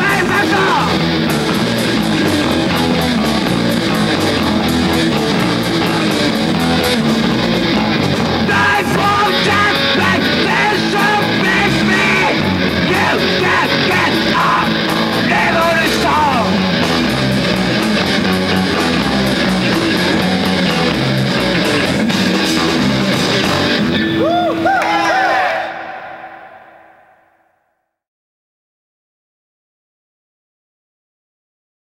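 Loud, dense rock music with electric guitar. Near the end a single held tone rings out and the music fades away.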